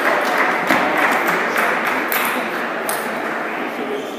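Table tennis rally: the ball clicks sharply off rackets and table about every half second to second, over crowd noise and murmur that slowly dies down.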